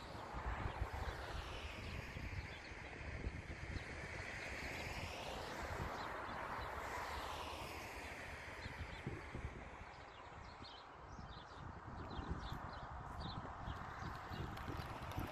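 Wind buffeting the microphone over the hiss of a passing vehicle, which swells to its loudest around the middle and then fades. Faint bird chirps come in near the end.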